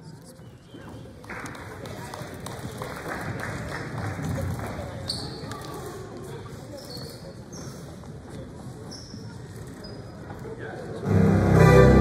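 Basketballs bouncing on a gym floor during pre-game warm-up, over crowd chatter, with short high squeaks scattered through. A much louder sound comes in near the end.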